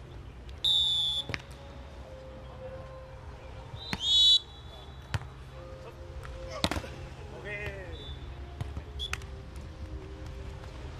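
Referee's whistle blown twice, a short blast just under a second long about half a second in and a louder, shorter one about four seconds in. Then come the sharp slaps of hands hitting a beach volleyball during play and a player's brief shout.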